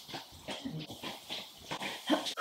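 A person moving about: bare footsteps on the floor, clothes rustling and a few short breaths as she walks off, comes back and sits down again.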